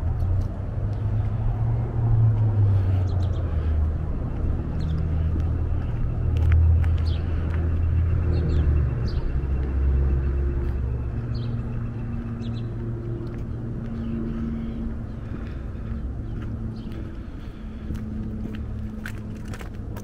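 Outdoor street ambience dominated by the low rumble of road traffic. It is loudest in the first half and eases off later, when a steady engine hum remains.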